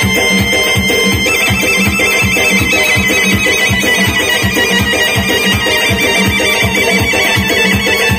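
Instrumental Khorezm lazgi dance music played live: a doira frame drum and a double-headed drum keep a fast, even beat under a high, wavering melody line.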